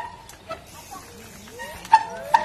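Trials bike hopping on its back wheel on rock: a sharp knock as the wheel lands at the start, a smaller knock about half a second in, and another sharp knock near the end. Squealing, whistle-like tones come around the landings, most near the end.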